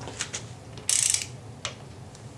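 Socket ratchet wrench on the crankshaft balancer bolt of a 5.3 V8 engine clicking: a few single clicks and a loud quick run of ratchet clicks about a second in as the handle is swung.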